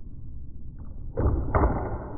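Ball hockey stick blade knocking the ball on a plastic shooting pad during stickhandling: a faint tap, then a louder scraping stretch with two sharp knocks in the second half, over a steady low wind rumble on the microphone.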